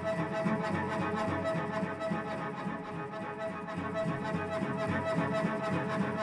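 Solo cello being bowed: a high note held steady over shifting low bowed notes, rich in overtones.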